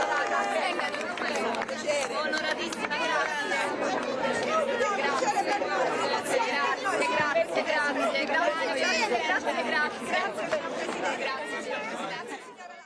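Large crowd of women chattering and calling out all at once, many overlapping voices with no single speaker standing out.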